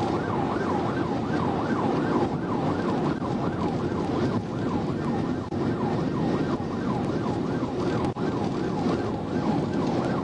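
Police car siren on a rapid yelp, its pitch rising and falling several times a second, heard from inside the cruiser. Under it runs steady road and engine noise at about 100 mph.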